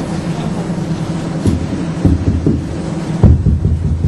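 A handheld microphone being handled and adjusted, picking up low rumbling handling noise and several dull thumps, the loudest about three and a quarter seconds in.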